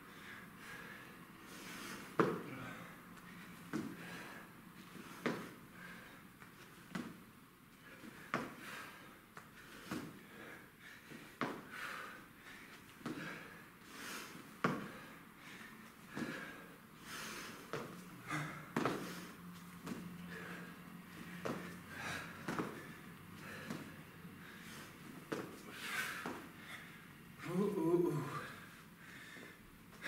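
A man breathing hard through bodyweight exercise, with sharp exhales about every one to one and a half seconds and soft thumps of hands and feet on a rubber gym floor during push-ups and burpees. A louder voiced breath comes near the end.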